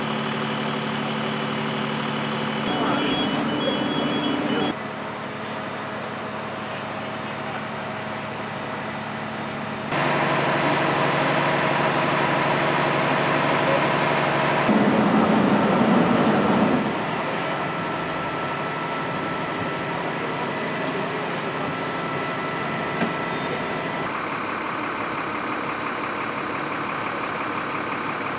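Fire engine's engine running steadily at idle: a low, even hum. It comes in several short takes joined by abrupt cuts that change its loudness and pitch.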